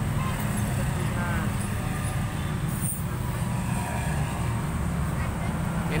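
Steady street traffic, mostly motorcycle engines running past, with a low continuous rumble.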